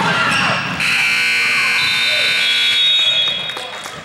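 Gymnasium scoreboard buzzer sounding one steady tone for about two seconds, starting just under a second in. Voices in the gym come before it, and a basketball bounces near the end.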